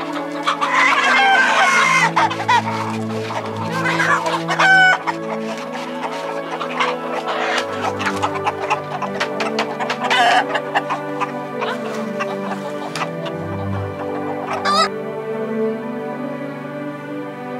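Chickens clucking and giving short loud calls as they crowd round to peck at food shaken out for them, with many small clicks. Background music with sustained tones plays under them.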